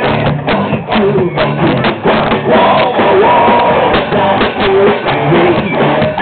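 Live rock band playing loudly: a drum kit beating out a steady rhythm under electric guitars and a singing voice. The recording sounds dull and muffled, as from a camera in the audience.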